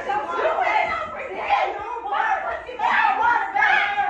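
Several voices chattering over one another in a room.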